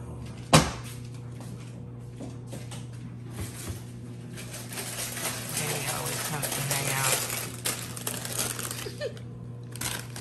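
A sharp click about half a second in, then several seconds of crackling, rustling handling noise that swells and fades, loudest near the middle: a foil chip bag being crinkled.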